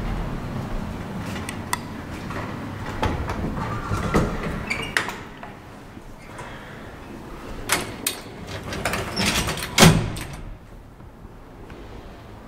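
Landing door and sliding metal bar gate of a vintage gated elevator being opened and shut: handling clicks, knocks and metal rattles, with a loud bang just before ten seconds in as a door or gate closes.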